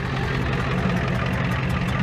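Ford F-250's 7.3 IDI V8 diesel engine idling steadily, with a fast, even clatter.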